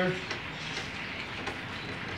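The end of a spoken word, then steady background noise with a couple of faint clicks as hands handle the clamp on a stainless-steel kayak stabilizer arm.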